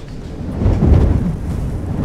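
Strong wind gusting with a deep rumble, building about half a second in and swelling.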